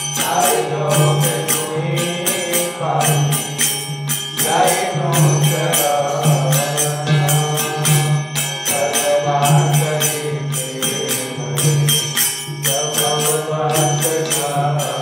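Devotional chanting of a mantra: singing voices over small hand cymbals in a quick, steady rhythm, with a low tone pulsing underneath.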